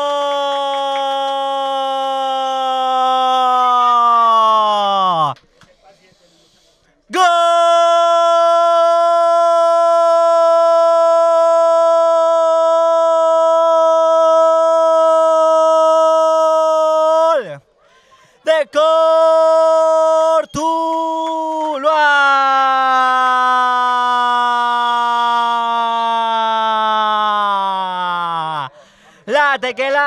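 A football commentator's long-drawn goal cry, one vowel held loud and steady over several breaths, the longest about ten seconds. Each breath slides down in pitch as it runs out. It hails a goal just scored.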